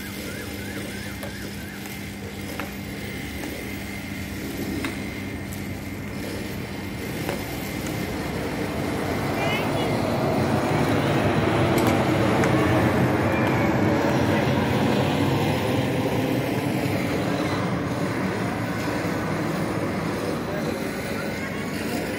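Engine noise that grows louder over several seconds, peaks about halfway through, then slowly fades, as of a motor passing by.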